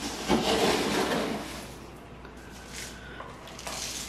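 Granular pon substrate rattling as it is scooped and poured into a plastic plant pot, a rushing pour strongest in the first second and a half, then quieter trickling.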